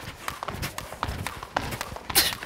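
A skipping rope slapping the hall floor and sneakers landing, a steady run of light taps several times a second, as one person jumps rope.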